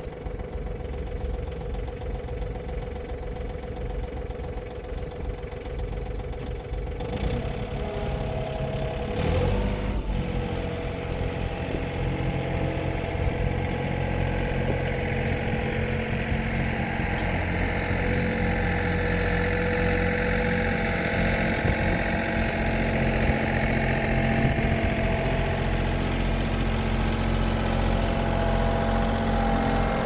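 John Deere compact tractor's diesel engine running at low speed while it backs a utility trailer on a 3-point trailer mover. The engine gets louder about ten seconds in as the tractor comes closer.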